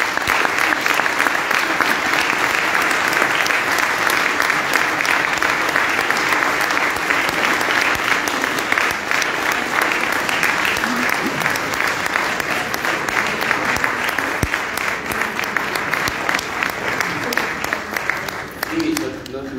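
Audience clapping, a long steady round of applause that eases slightly near the end.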